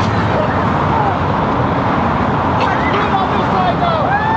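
Steady noise of road traffic driving past, with faint voices underneath.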